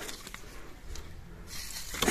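Faint rustling of eggplant leaves and dry straw mulch as someone moves in close among the plants, growing a little louder and brighter near the end.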